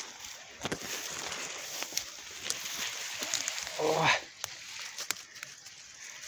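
Footsteps and rustling through dry grass and undergrowth, with scattered snaps of twigs and stems, and a brief grunt-like voice sound about four seconds in.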